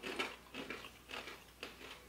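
Close-up chewing of crunchy dried mango-flavoured coconut chips: a quick, irregular run of soft crunches, with a stale crunch to them.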